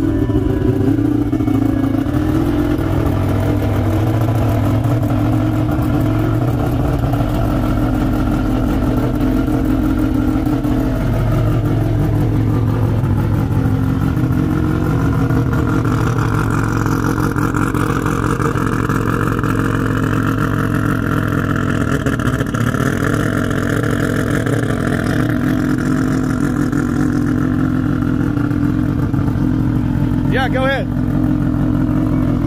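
Turbocharged four-rotor Mazda RX-7 rotary engine running at a steady idle, first heard from inside the cabin and then from behind the car.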